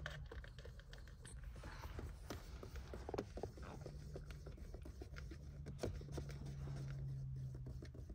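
Light handling noises: fingers working the plastic lid and straw of a smoothie cup, with scattered small clicks and scratches. A faint steady low hum comes in over the second half.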